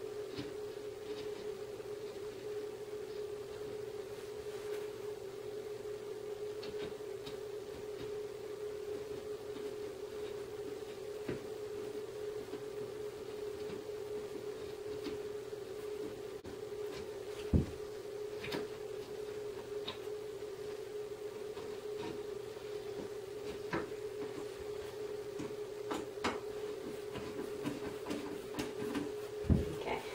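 Light clicks and taps from a screwdriver hand-driving a Phillips screw into a particleboard bookcase panel and from the panel being handled, with one louder knock a little past the middle. A steady low hum runs underneath.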